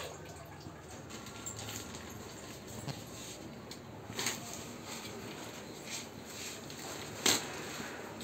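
A plastic bag holding blocks of paraffin wax being handled and opened: faint rustling with a few sharp crinkles, the loudest a little after halfway and near the end.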